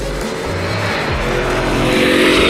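Supercharged V8 of the Shelby F-150 Super Snake and twin-turbo V8 of the Lamborghini Urus at full throttle in a roll-race launch. The rush of the vehicles grows louder toward the end as they pass. Background music plays throughout.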